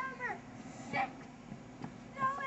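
A child's short, high-pitched squeal that falls in pitch, then a faint single word about a second later.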